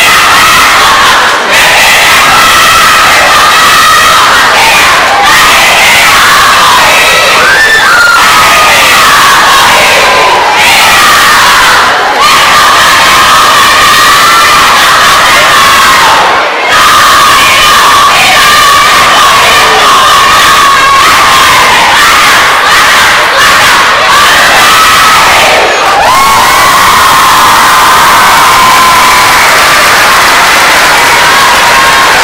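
A kapa haka group of school children chanting and singing in unison, very loud, with held notes and a few brief breaks between phrases.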